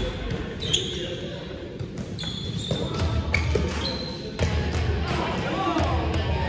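Spikeball play in an echoing gym: scattered knocks of the ball and feet, short squeaks of sneakers on the sports floor, and players' voices in the hall.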